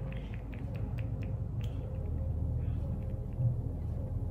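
A few faint clicks from the pump of an Il Makiage foundation bottle being pressed to dispense foundation onto the back of a hand, over a steady low room hum.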